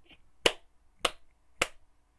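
Three sharp clicks made by a person's hands, evenly spaced a little over half a second apart.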